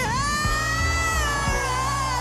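A woman sings one long, high held note over a live band playing a slow soul ballad. The note scoops up into pitch at the start and sags a little near the end.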